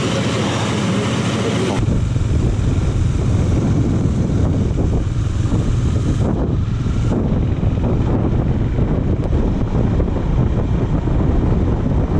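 Wind rushing over the camera microphone of a moving KTM Duke 390 motorcycle, a steady deep rush. About two seconds in, a cut makes it abruptly louder and deeper, as at road speed.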